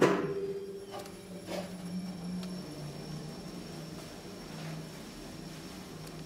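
A loud thump with a short ring-out, then a KONE Monospace elevator car with Ecodisc gearless machine travelling, with a steady low hum and a faint high whine from the drive.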